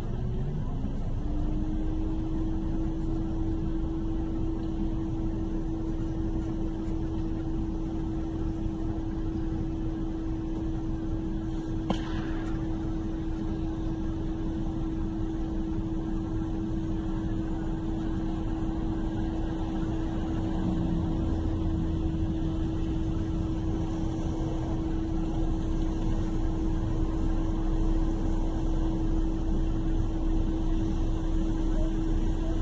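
Steady low rumble of a vehicle heard from inside the cab, with a steady hum that rises and settles about a second in. One sharp click comes near the middle.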